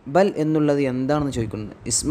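A man's voice speaking continuously, narrating.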